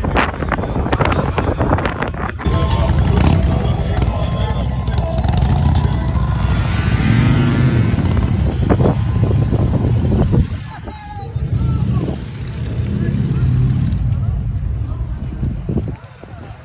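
Steady low engine rumble mixed with people's voices, loud throughout.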